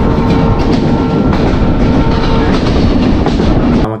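Moving passenger train heard from an open coach window: loud, steady running noise of wheels on the track with clicks from the rail joints. A steady high tone sounds over it until about two and a half seconds in. The sound cuts off abruptly just before the end.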